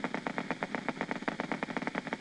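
Needle electromyography machine's loudspeaker playing the electrical activity picked up by a concentric needle electrode in the triceps brachii: a rapid, even train of sharp clicks, about twenty a second. These are motor unit potentials firing repeatedly in a normal muscle.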